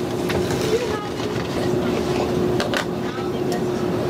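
Shop room noise: a steady hum over a rushing background, with scattered clicks and faint distant voices, cutting off abruptly near the end.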